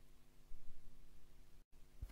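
Faint hiss and steady low hum of an old recording in the gap between tracks, cutting briefly to dead silence near the end.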